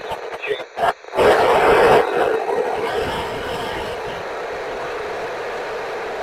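Icom IC-2730A FM transceiver's speaker giving broken, unintelligible satellite-downlink audio, then a loud rush of static about a second in that settles into a steady hiss: a weak, noisy FM satellite signal.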